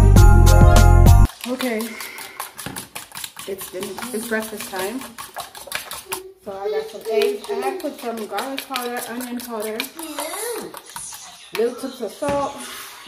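Background music cuts off about a second in. Then a metal spoon clicks rapidly and repeatedly against a ceramic bowl, beating eggs, while a high voice hums and talks indistinctly over it.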